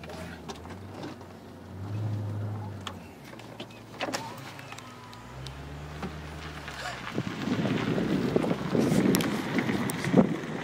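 A car's engine and tyres heard from an open window as it rolls slowly. The low engine hum swells twice, then a louder rushing road and wind noise builds over the last few seconds.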